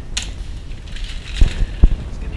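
Handling noise on a GoPro in its housing on a selfie stick: a sharp click just after the start, then two low thumps about half a second apart near the end.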